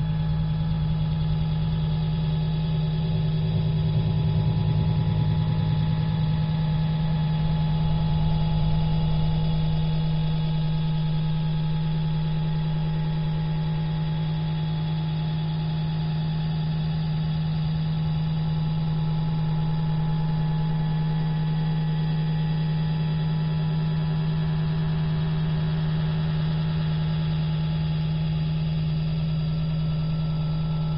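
A steady low drone: one strong, unchanging tone with a rumble beneath and fainter tones above, holding level throughout.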